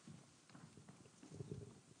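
Near silence: room tone with a few faint, soft knocks in the second half.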